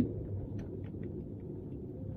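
Car cabin noise while driving: a low, steady rumble of engine and tyres on a rough road surface, with a few faint ticks.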